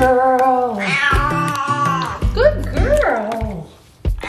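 A wet cat meowing in protest while held in a bathtub for a bath: one long drawn-out yowl that drops in pitch at its end, then two shorter meows rising and falling, over background music.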